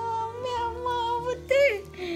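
A puppy whining in high, drawn-out cries: one held for over a second, then a short rising-and-falling one near the end.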